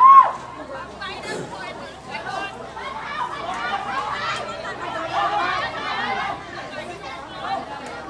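Many overlapping voices chattering and calling out across an open field, with one loud, high shout right at the start.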